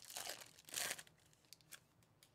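Plastic-foil wrapper of a Bowman Chrome baseball card pack being torn open and crinkling, loudest just under a second in. A couple of faint ticks follow as the cards come out.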